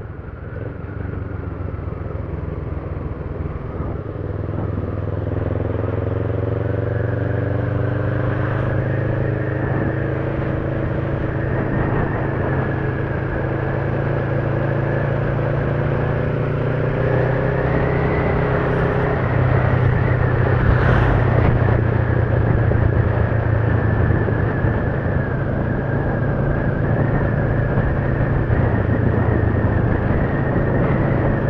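Kawasaki ER-5's parallel-twin engine running steadily under way, with road and wind rush. The engine note climbs slowly through the first twenty seconds or so as the bike gathers speed, then holds steady.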